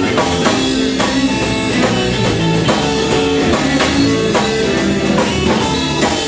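Live blues band playing an instrumental passage: drum kit keeping a steady beat under electric guitars, bass and a Nord keyboard holding chords.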